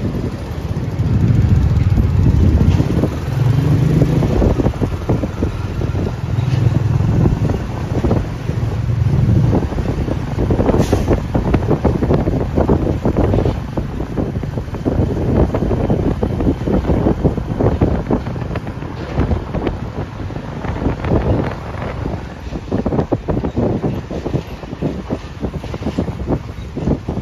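Royal Enfield motorcycle engine running under way, heard from the moving bike, with heavy wind buffeting on the microphone. The engine's low rumble is strongest and pulses in the first ten seconds, then sits lower under the wind noise.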